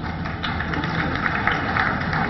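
An audience clapping steadily, a dense patter of many hands.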